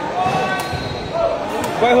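A few short knocks of a sepak takraw ball being tapped and bounced in the hands, under people's voices talking and calling out.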